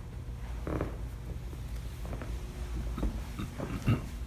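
Grappling on a foam mat: gi cloth scuffing and bodies shifting, with a few short knocks and a louder thump near the end, over a low steady room hum.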